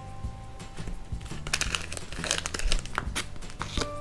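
Plastic packaging of a small collectible pack crinkling and rustling as it is handled, growing busier about a second and a half in, over quiet background music.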